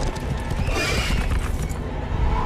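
Horse hooves galloping, with a horse neighing about a second in.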